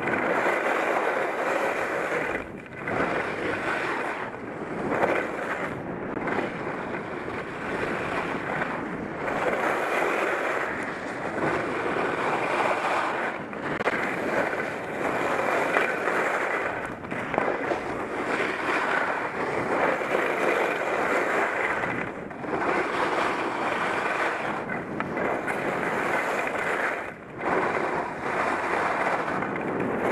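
Skis scraping and carving on firm, hard-packed snow, swelling and easing with each turn, mixed with wind rushing over a helmet-mounted microphone.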